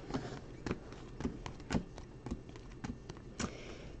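2020 Topps Finest chromium-stock baseball cards being flipped one at a time through a hand-held stack, giving about a dozen soft, irregular clicks.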